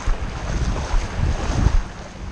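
Wind buffeting the microphone in uneven gusts of low rumble, over the wash of small waves in shallow surf.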